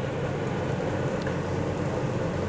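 Diced guanciale sizzling steadily as it renders its fat in a frying pan, over the continuous hum of a kitchen range hood fan.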